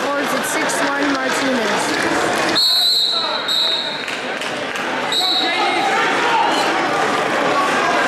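Coaches and spectators calling out in a gymnasium during a high-school wrestling bout, with scattered thuds of feet on the mat. A shrill high tone cuts through twice, for about a second a little before the middle and briefly again a couple of seconds later.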